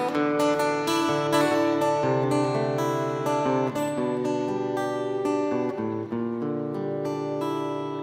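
Acoustic guitar playing an instrumental passage with no voice: chords struck in quick strokes, each ringing on, growing quieter near the end.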